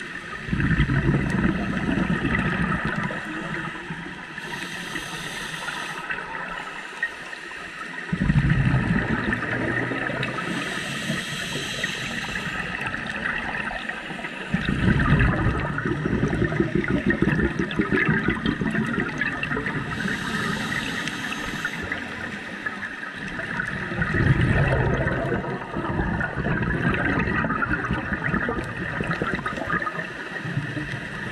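Scuba diver breathing through a regulator, heard underwater: four loud bursts of exhaled bubbles, about 7 to 9 seconds apart, each alternating with a short hiss of air being drawn in through the regulator. A steady hiss runs underneath.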